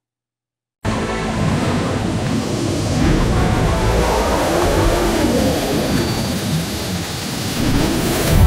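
AI-generated ad soundtrack from WAN 2.5: a loud, dense, rushing wash of rumbling noise with music mixed in. It starts abruptly about a second in and grows a little louder near the end.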